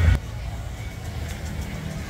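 Street ambience with a steady low rumble of road traffic and faint music. Louder bass-heavy music cuts off abruptly in the first moment.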